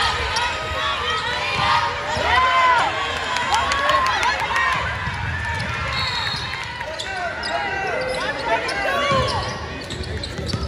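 Basketball shoes squeaking on a hardwood court in quick, repeated chirps as players run and cut, with the ball bouncing on the floor and voices calling out in the hall. A short high referee's whistle sounds about six seconds in.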